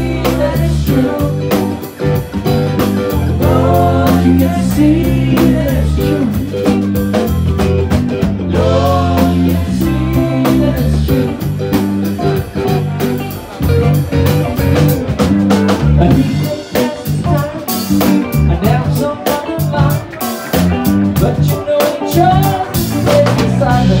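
A live band playing loud: electric guitar, electric bass and drum kit.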